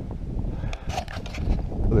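Wind buffeting the microphone in a steady low rumble, with a few short clicks and rustles about a second in.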